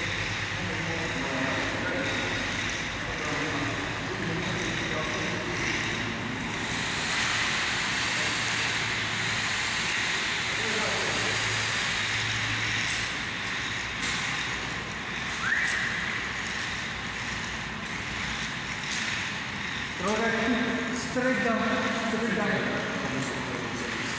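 Long-handled roller spreading wet epoxy floor coating, a steady wash of noise, with faint voices in the background and a laugh near the end.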